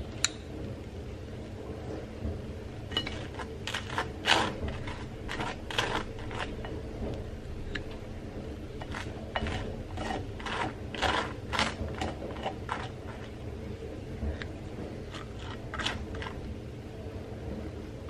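Table knife spreading hazelnut cream on slices of toast: an irregular run of short scrapes and clicks of the blade on the bread and the plate.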